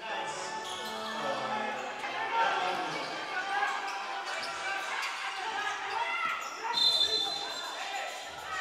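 Live basketball game sound in a gym: a ball bouncing on the wooden court amid players' and spectators' voices. About seven seconds in, a referee's whistle blows a long steady blast to call a foul.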